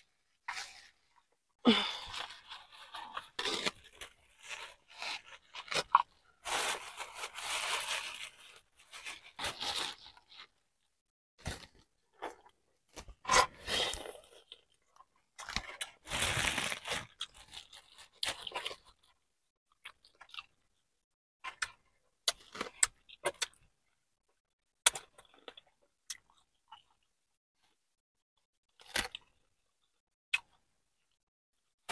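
Plastic bag crinkling and crab-leg shells cracking as seafood boil is handled and eaten, with some chewing. The sound comes in irregular bursts, busiest in the first ten seconds and again around sixteen seconds, then thins to scattered clicks.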